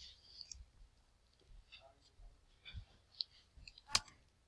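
A single sharp computer mouse click near the end, advancing the slide, with faint scattered small noises before it.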